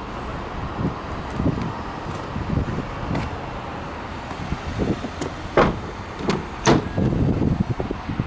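Handling noise and low rumbling as a car's doors are worked by hand, with two sharp knocks about five and a half and six and a half seconds in.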